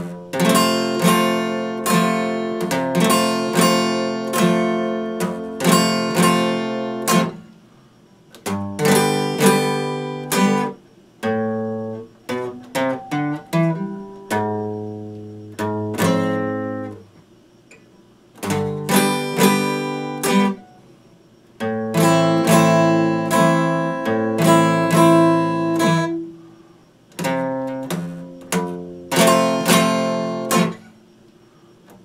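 Acoustic guitar being played: chords strummed and picked in short phrases, each broken off by a brief pause before the next.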